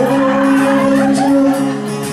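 Live acoustic guitar and bass guitar playing, with a male voice sliding up into one long held note.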